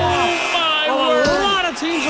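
People's voices calling out with crowd noise behind them.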